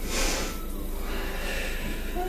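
A short, sharp exhale through the nose at the start, then steady low background hum.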